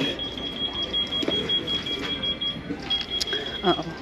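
A high-pitched electronic alarm sounding one steady tone for about two and a half seconds, stopping briefly, then sounding again for about a second.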